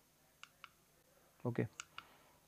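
Small sharp clicks of a handheld presentation remote's button being pressed to advance the slides: two about half a second in and two more near the end.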